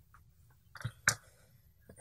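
Two small sharp clicks close together about a second in, as small rubber grommets are pressed into a tiny drone flight-controller board's mounting holes, with faint handling of the board.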